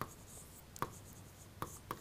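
Stylus pen writing on an interactive display screen: a few light taps with faint scratching between them as words are written by hand.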